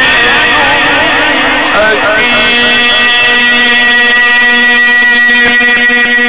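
A man's voice singing a religious chant (inshad) in ornamented, wavering runs, then, about two seconds in, settling on one long held note.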